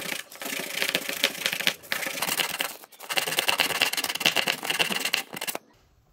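Rapid back-and-forth scraping of a PVC disc's edge being sanded by hand on sandpaper. There are two runs of quick strokes with a short pause about halfway, and the sanding stops shortly before the end.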